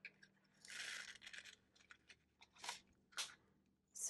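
Faint rustling and crinkling of a small plastic bag of leftover resin diamond painting drills being handled: a soft rustle about a second in, then two short crinkles near the end.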